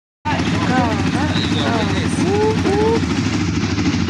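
Off-road buggy engine running with a steady low drone, with voices calling out over it in short rising calls, twice in pairs in the second half.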